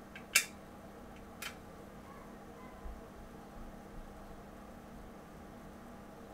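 A sharp click about a third of a second in and a softer click about a second later, over a steady low hum of room tone.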